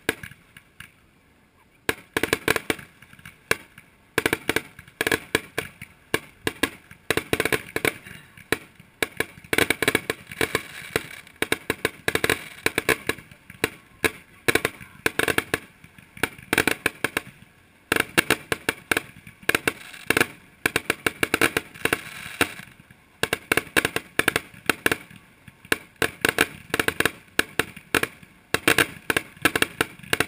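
Aerial fireworks going off in a rapid, continuous barrage: dense clusters of sharp bangs and pops, with one bang at the very start and the barrage taking off about two seconds in.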